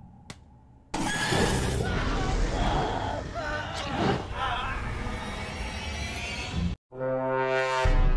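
Horror film soundtrack: about a second in, a sudden loud burst of crashing noise and music with a shattering quality runs for several seconds, then cuts off abruptly. A held musical chord follows near the end.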